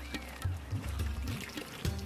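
Soft background music over faint trickling and lapping of water as dromedary camels drink from a trough.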